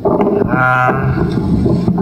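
A person's voice, not taken down as words, starting about half a second in with a held, wavering pitch.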